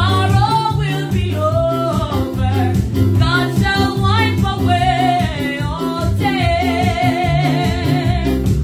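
A woman singing a gospel song over electronic keyboard accompaniment with a steady, repeating bass rhythm. In the last two seconds she holds one long note with vibrato.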